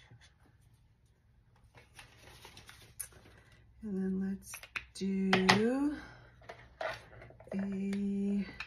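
Paper dollar bills rustling and clicking as they are handled, with a woman's voice making three short wordless hums, the second rising in pitch at its end.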